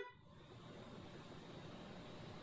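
Near silence: faint room tone with a low steady hiss and hum.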